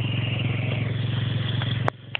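A small motorbike engine running at steady revs with an even, pulsing note. The sound cuts off suddenly near the end.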